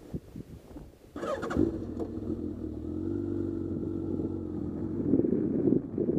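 Motorcycle engine starting about a second in with a brief burst, then running steadily and growing louder near the end as the bike pulls away.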